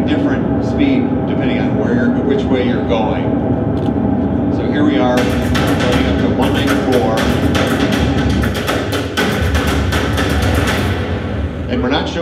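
In-cabin sound of a 2020 Corvette Stingray at about 193 mph: a steady high-revving engine note under wind noise, played back over a hall's loudspeakers. About five seconds in it gives way to music with a run of heavy drum hits, which fades near the end.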